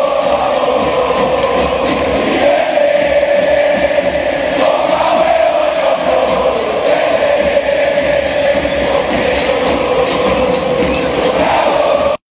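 Football stadium crowd of River Plate supporters singing a chant in unison, thousands of voices together over a steady rhythmic beat.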